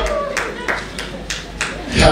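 A group of people clapping in rhythm, about three claps a second, with voices over the claps.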